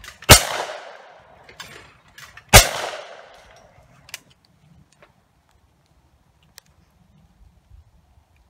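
Two shotgun shots fired at clay targets, a little over two seconds apart, each with a trailing echo that dies away over about a second.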